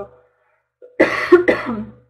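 A woman coughing twice in quick succession, about a second in.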